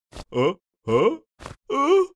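Wordless distressed vocal cries from voiced cartoon characters: three short cries with wavering pitch, with quick breaths between them.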